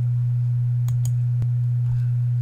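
A steady low hum, one unchanging tone, with a few faint clicks about a second in.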